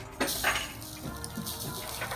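Beach sand being tipped out of a shoe: a sudden short gritty rush about a quarter second in, then a faint trickle.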